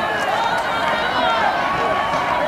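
Several voices shouting and calling over one another on and around a rugby pitch, over steady open-air background noise.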